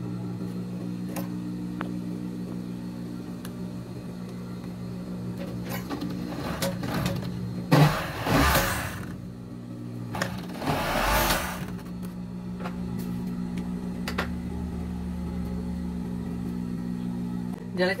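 An industrial overlock (serger) machine's motor hums steadily, with two short bursts of stitching a little over a second each, near the middle: the shoulder seam of a knit top being serged closed.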